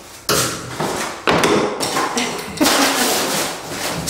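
Metal wire-grid climbing panel rattling and thudding against the plywood behind it as a capuchin monkey climbs and swings on it, in three loud bursts about a second apart.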